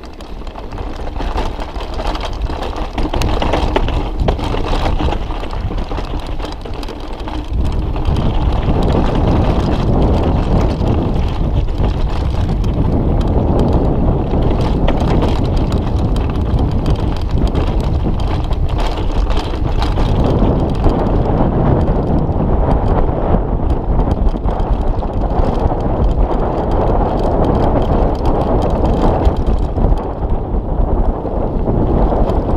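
Mountain bike descending a rough dirt track: tyre rumble and the bike's rattles and knocks over the ground, mixed with wind buffeting the action camera's microphone. The noise gets louder about seven and a half seconds in.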